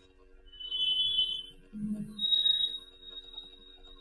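Two high-pitched electronic tones over a faint low hum: the first lasts about a second, starting shortly in, and the second, a little higher, holds steady through the last two seconds.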